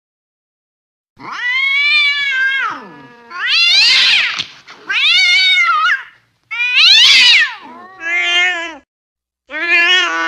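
Cats yowling in a fight: a run of six long, drawn-out howls, each rising and falling in pitch, starting about a second in with short gaps between them.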